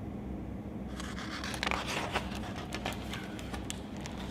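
Picture-book pages being handled and turned: a run of small paper crackles and scrapes starting about a second in, over a low steady hum.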